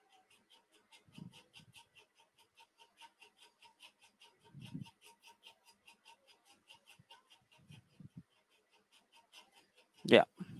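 Near silence on a live-stream feed, with a faint, rapid, even ticking of about five ticks a second and a few faint low thumps.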